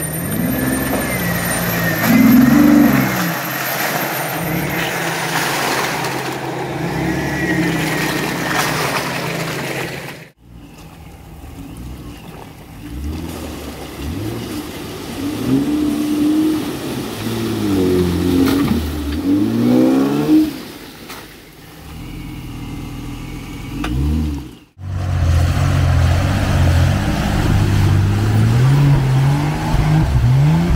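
Off-road 4x4 engines, a Jeep Wrangler's among them, revving up and down again and again as the trucks crawl through deep mud ruts. The sound breaks off abruptly twice as one vehicle gives way to the next.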